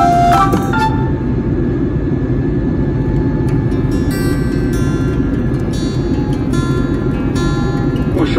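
Steady low roar of an airliner cabin in cruise, with background guitar music. A melody fades out about a second in, and fainter notes return partway through.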